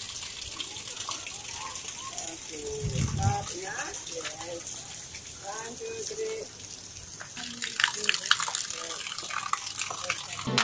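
A steady rush of running water, with several people's voices talking quietly under it.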